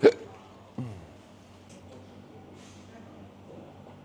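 A person's single sharp cough, the loudest sound, right at the start, followed about a second later by a short murmur falling in pitch; then only low steady room hum.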